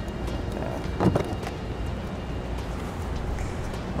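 Plastic door trim being handled and pried loose by hand, with one sharp click about a second in and a few faint ticks, over a steady low hum.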